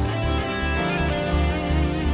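Live band playing slow worship music, a guitar line over sustained chords and a low pulse about twice a second.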